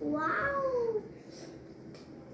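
A young girl's high voice in one drawn-out call of about a second, with no words, its pitch rising briefly and then sliding down.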